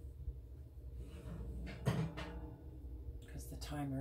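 An oven door being opened, with a sharp clunk about two seconds in, and a bread loaf pan lifted out with potholders, over a low steady hum.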